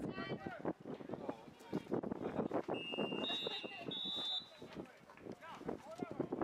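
Spectators' voices shouting and talking, with referees' whistles blown about three seconds in, two steady high tones overlapping for about a second and a half as the tackle ends the play.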